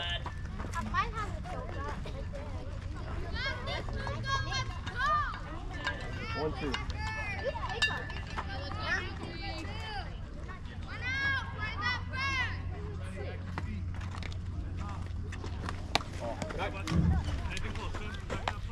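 Young children's voices shouting and calling out in several bursts, over a steady low hum.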